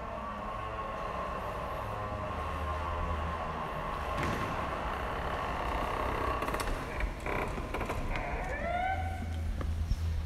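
A heavy door being pulled open: a clunk of the latch or handle about seven seconds in, then the hinges creak in a short rising squeal near the end.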